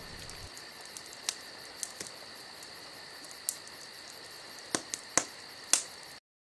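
Crackling fire: sharp single pops at irregular intervals, several close together near the end, over a steady hiss with a faint high whine.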